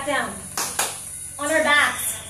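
A voice in short phrases, with a short rushing burst of noise a little over half a second in.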